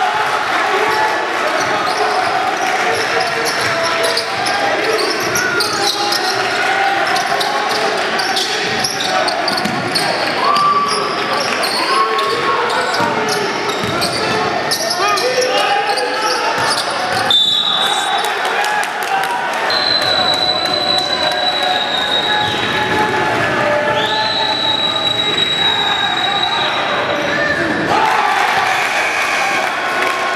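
Basketball bouncing on a hardwood gym floor as it is dribbled, over the echoing chatter of voices in the gym. A few long, high steady tones come and go in the second half.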